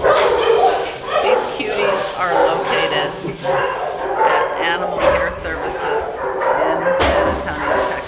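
Several dogs barking and yipping in a shelter kennel, a dense, unbroken din with some higher whining cries mixed in.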